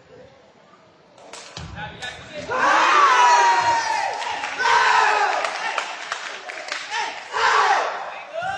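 A couple of sharp thuds from a sepak takraw ball being kicked, about a second and a half in. Then loud, rising shouts of celebration from the players as they win the rally.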